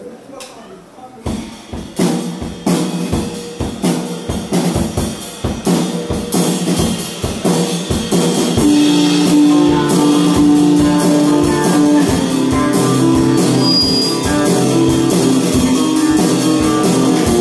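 Live rock band playing: drums, electric bass and guitar come in about a second in, and the band gets louder and fuller about eight seconds in, with long held notes over the beat.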